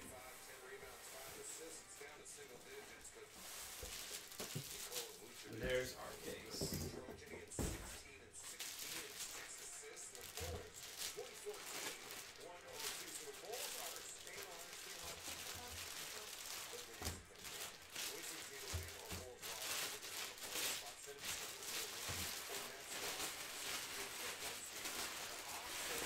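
Cardboard shipping box and a shrink-wrapped case being unpacked and handled: irregular rustling and crinkling of plastic wrap and cardboard with light knocks.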